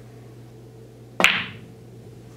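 A shot on a pool table: one sharp click just over a second in as the cue ball is driven into a frozen pair of object balls, ringing out briefly.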